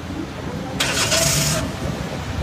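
Low, steady rumble of a car park with cars queued and running, broken about midway by a loud burst of hiss lasting under a second.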